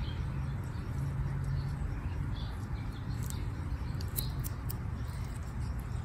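A steady low outdoor rumble, with a few brief, faint high bird chirps scattered through the middle of it.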